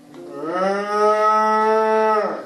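A cow mooing: one long moo that rises in pitch at its start and then holds steady.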